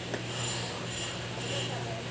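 Fingers rubbing and sliding over plastic-wrapped cardboard product boxes: a soft rasping that comes in a few short swells, over a steady low hum.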